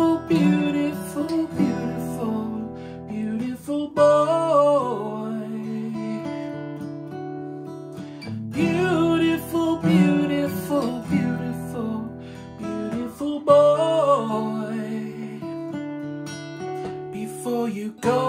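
Steel-string acoustic guitar picked and strummed, with a man singing over it in a few phrases.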